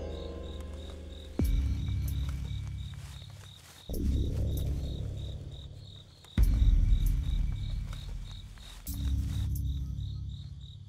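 Crickets chirping steadily in a quick, even rhythm, under a suspense film score of deep swells that start suddenly about every two and a half seconds and fade away.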